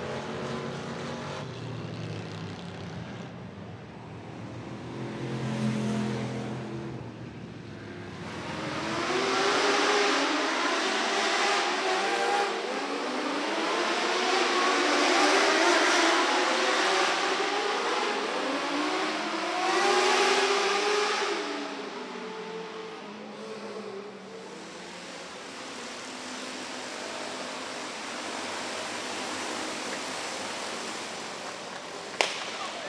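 Dirt-track race car engines. First come the deeper engines of two full-bodied stock cars running down the straight. From about nine seconds in, a pack of small winged sprint cars takes over, many high-revving engines rising and falling in pitch together, loudest through the middle and easing near the end.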